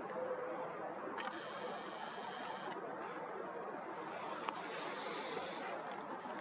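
Quiet outdoor background at night: a faint steady hiss, with a brief higher hiss from about one to three seconds in.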